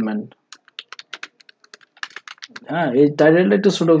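Computer keyboard typing: a quick run of keystrokes lasting about two seconds, between stretches of speech.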